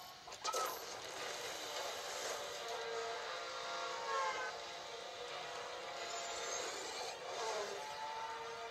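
Motorcycle engines racing in a film chase scene, heard through a television's speaker: a thin sound with no bass, with a few rising revs.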